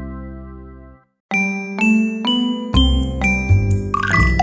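Music fades out on a held chord and cuts to a short silence about a second in. Then a logo jingle starts: bright chime notes struck one after another about twice a second, mostly climbing in pitch, joined near the three-second mark by a fuller musical sound with a deep bass.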